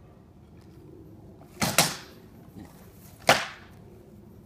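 Rattan sword blows cracking against a round shield in armoured sparring: two sharp strikes in quick succession about a second and a half in, and a third, the loudest, a little after three seconds. Most of the blows are being blocked on the shield.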